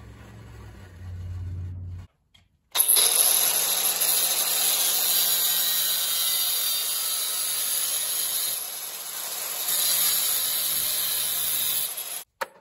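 Angle grinder with a cut-off wheel cutting through steel tubing: a loud, steady grinding hiss over the motor's low, even tone. It starts about three seconds in after a short low hum and break, and eases briefly about two-thirds of the way through.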